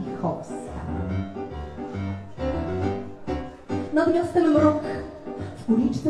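Live keyboard accompaniment on a Nord Stage 2 EX stage keyboard with a pulsing bass line, and a woman's voice sung through a microphone over it, strongest in the second half.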